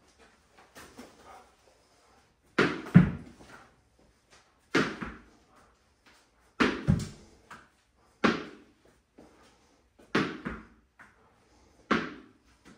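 A tennis ball bouncing on a concrete floor, each impact sharp and echoing in a bare garage. It comes about every one and a half to two seconds, often as a quick double hit.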